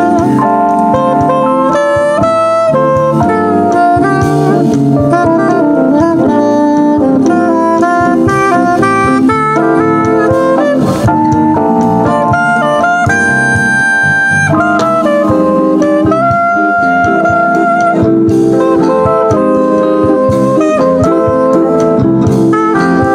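A live jazz band playing: a soprano saxophone plays the melody over electric guitars and a drum kit, continuously, with one high note held for about a second midway.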